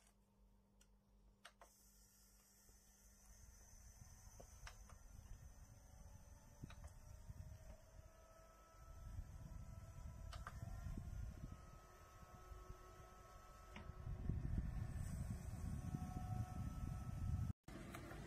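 Faint low rush of air from a USB mini air cooler's fan running, getting louder in steps about nine and fourteen seconds in, with a few soft clicks.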